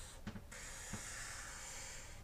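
Felt-tip marker drawing strokes on a paper pad: a faint, steady scratchy hiss that breaks off briefly about a third of a second in, as the marker lifts between strokes.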